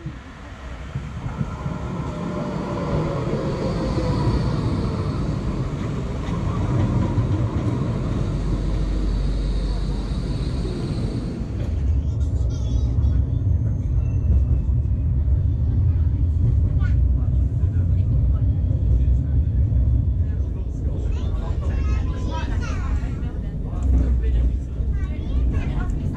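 A light-rail tram running at a platform, with a faint falling whine. About halfway through, this gives way to the deeper rumble heard riding inside the tram, with passengers' voices in the background.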